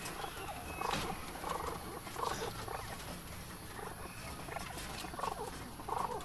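Racing pigeons cooing in a loft: short, scattered calls at a moderate level, with a few faint clicks.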